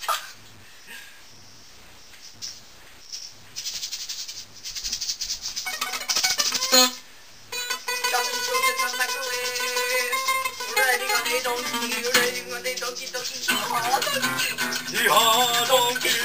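Acoustic guitar played as an improvised solo: near-quiet for the first few seconds, then strumming comes in and builds into fuller playing with held notes.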